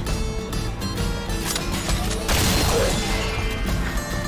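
Music from an animated fight-scene soundtrack, with a sudden crash of sound effects starting a little over two seconds in and lasting about a second.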